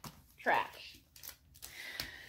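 A short falling vocal sound, a sigh-like "ooh", about half a second in, with faint rustling and knocks of items being handled and put away.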